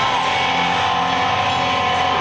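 Death metal band playing live: loud distorted electric guitar over the band, heard from within the crowd, with a held guitar note ringing through.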